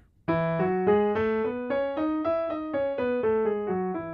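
Piano playing a quick run of paired notes in E major that steps upward and then back down, about four notes a second, ending on a chord left ringing.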